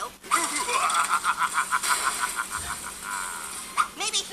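A rapid, high-pitched rattling sound effect from the cartoon's soundtrack, about ten clicks a second that slow slightly and then give way to a short buzz near the end.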